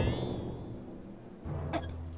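A sharp hit with a fading ring, then from about one and a half seconds in the low rumble of a bowling ball rolling down a lane, with a few quick clicks.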